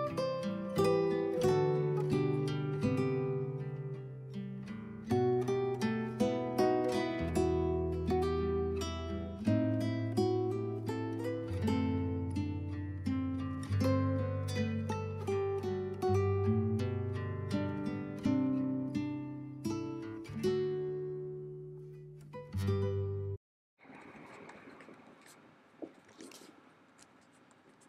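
Background music of gently plucked string notes over a bass line, which cuts off abruptly near the end. It is followed by the faint scratching of a gel pen writing on paper.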